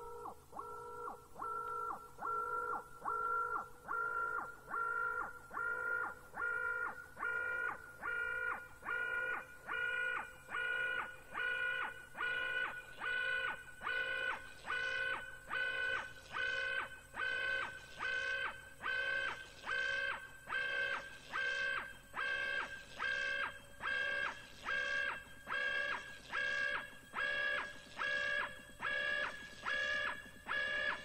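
Techno breakdown: a synthesizer chord pulsing in a steady even rhythm with no kick drum, slowly rising in pitch and growing brighter as the track builds.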